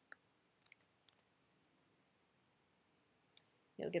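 Several short, sharp computer keyboard and mouse clicks: one right at the start, a quick cluster of three about half a second in, two more around a second in, and a single click near the end. They come from entering a password and clicking a Log In button.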